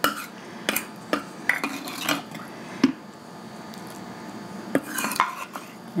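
A plastic measuring cup knocking and scraping against a glazed stoneware slow-cooker crock as cooking liquid is scooped out. The first three seconds hold a run of light clicks, and another short cluster comes near the end.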